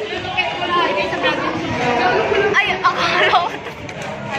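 Several young people's voices chattering at once, overlapping and indistinct.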